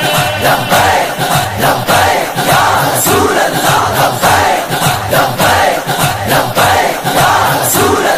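Naat backing of a group of male voices chanting together over a steady, regular beat.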